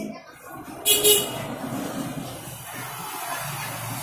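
Motor vehicle traffic running, with a brief loud burst about a second in, then a steady low engine hum.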